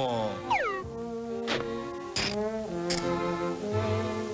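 Orchestral cartoon score with a drawn-out yawn that slides down in pitch just under a second in. Then come held chords, marked by three sharp hits about two-thirds of a second apart.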